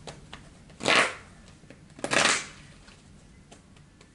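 Tarot cards being shuffled by hand: two short rustling bursts about a second apart, with a few light clicks of cards between.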